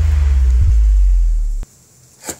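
Deep, loud bass drone of an added dramatic sound effect, stepping down in pitch about half a second in and cutting off suddenly near the end.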